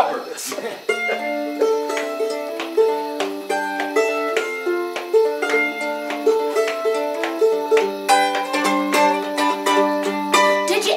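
Ukulele played solo: a picked tune of single notes and chords that starts about a second in, as the instrumental introduction to a song.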